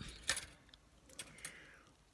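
A few light clicks and clinks with a soft rustle: embroidery floss and its clear plastic floss drop on a ring being handled.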